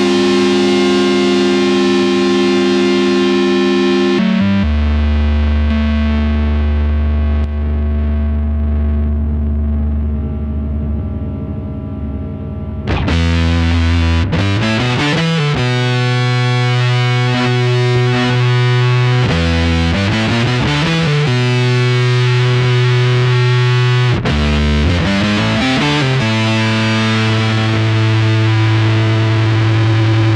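Electric guitar played through a Keeley Octa Psi fuzz and octave pedal with both its octave and fuzz sides on: long, heavily distorted sustained notes. A low note from about four seconds in goes duller and fades a little. From about thirteen seconds a brighter, louder phrase follows, with notes sliding up and down in pitch a few times.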